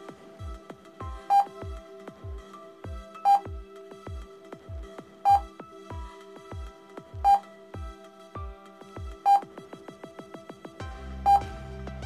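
Electronic background music with a steady beat, and a short high beep every two seconds, six times, each marking a new number flashed up for mental-arithmetic practice. A deeper bass line comes in near the end.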